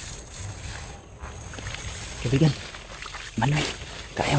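Low, uneven rustling noise of people walking through dense leafy undergrowth. A man's voice breaks in briefly twice, in the second half.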